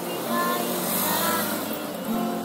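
A motor vehicle's engine swelling and fading, peaking a little after a second in, loud over a busker's singing.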